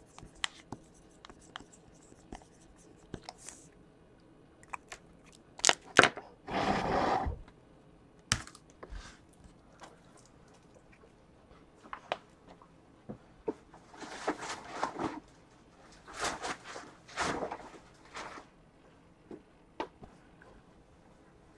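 Tabletop handling noises: a marker scratching on a shrink-wrapped card box, then scattered clicks and several rustling bursts, the loudest about seven seconds in.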